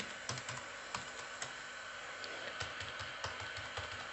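Typing on a computer keyboard: a run of faint, irregularly spaced key clicks as a user name and password are entered.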